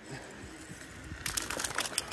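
Faint outdoor background, then, from a bit past halfway, a quick run of sharp clicks and clinks from a metal safety carabiner being handled on its rope lanyard.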